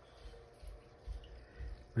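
Faint bubbling and dripping of water from an aquarium's air-driven sponge filter.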